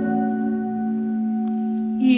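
A single instrumental note from the accompanying band, held steady and even without vibrato.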